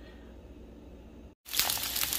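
Yukon Gold potato wedges sizzling in hot olive oil in a nonstick skillet, with a dense fine crackle. The sizzle starts suddenly about one and a half seconds in; before that there is only faint room tone.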